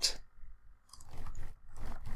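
Typing on a computer keyboard: a quick, irregular run of soft key clicks.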